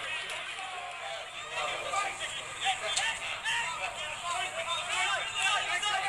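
Several voices calling out and talking over one another, with no clear words: shouts from players and spectators at a football ground.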